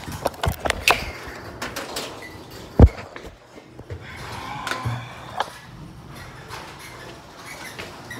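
Phone being handled and moved about: rubbing and scattered knocks, with one loud thump nearly three seconds in.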